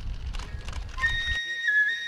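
A rumbling background noise with scattered clicks, then from about a second in a kagura flute (fue) playing long, high held notes that step down slightly and back up.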